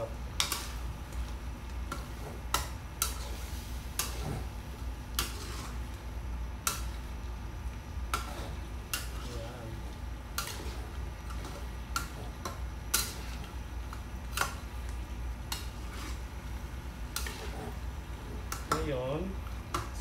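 Metal spatula scraping and knocking against a wok while stir-frying stingray pieces, in irregular strokes about once a second.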